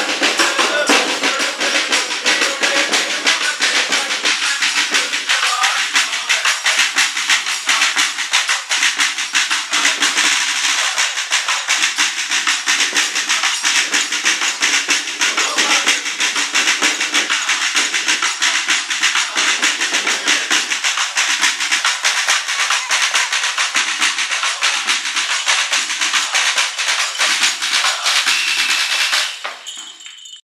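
A group of carolers singing over a fast, steady beat on a double-headed drum played with sticks, with hand clapping. The sound drops away sharply just before the end.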